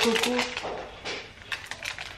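A short murmur from the cook's voice. Then a few light clicks and taps, about three in the second half, as she handles ingredients over the food processor bowl.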